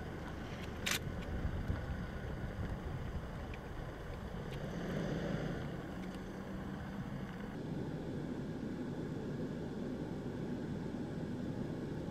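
Steady low hum of a motor vehicle's engine running, with a single sharp click about a second in.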